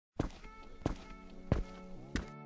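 Footstep sound effects: three evenly spaced thuds, about two-thirds of a second apart, over a soft held musical chord.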